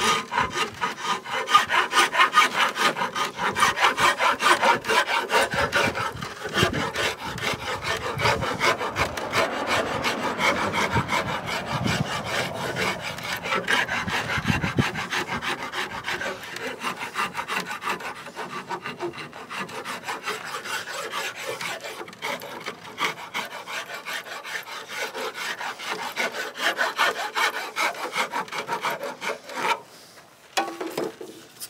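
A hand rasp stroked quickly and repeatedly along a wooden guitar neck, scraping wood to round the neck over.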